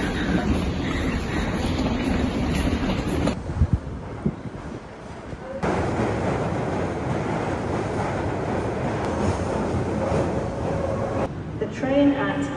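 London Underground train moving along the platform, a steady running noise for about six seconds from the middle on. Before it comes a shorter stretch of station bustle with voices.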